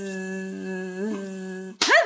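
A person humming one long steady note with a brief waver about a second in. It stops abruptly just before the end, where a sharp rising vocal sound cuts in.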